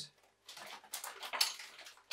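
Crinkling and rustling of plastic Lego minifigure blind bags and a paper leaflet being handled, a string of short irregular scratches starting about half a second in.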